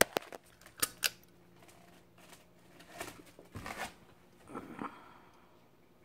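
A few sharp clicks in the first second, then faint scattered rustling and handling noises, made while an LED bulb is fitted into a ceiling-fan light fixture.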